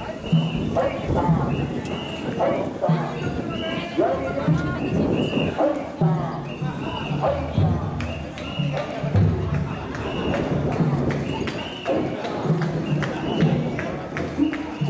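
A festival procession: many voices calling out in a repeated rhythm, with sharp clacking strikes, about one beat a second.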